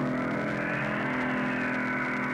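Dramatic film soundtrack: a rushing sound effect swells about a second in and then slowly fades, over a sustained chord of music.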